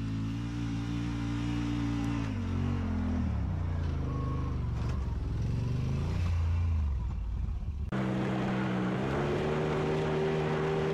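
Side-by-side UTV engines running. The pitch holds steady at first, then drops and climbs with the throttle. About 8 s in it cuts off suddenly to another engine running steadily, its pitch rising slightly.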